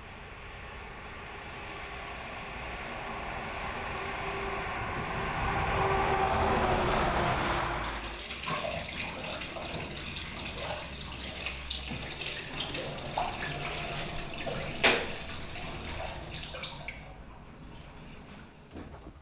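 Road traffic noise swelling steadily as a vehicle approaches, broken off about eight seconds in. Then quieter room sound with scattered light knocks and clinks, and one sharper knock a few seconds before the end.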